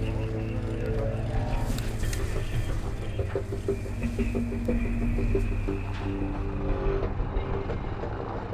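Steady low rumble of a military vehicle's engine, with background music over it.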